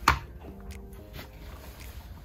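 A sharp plastic click right at the start, then a few fainter clicks, as hands work at the twist-off lid of a Likit Snak-a-Ball plastic treat ball. Soft background music with held notes runs underneath.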